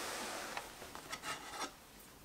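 A hand sliding across a cloth table mat, a soft rubbing that fades in the first half-second, followed by a few light clicks and taps as an Apple Pencil is picked up.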